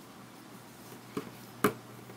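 Wooden knitting needles clicking together as stitches are purled: two light clicks, the second one louder, about half a second apart.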